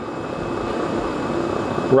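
MSR WindBurner canister stove's gas burner running steadily under a pot of frying oil that is heating toward frying temperature.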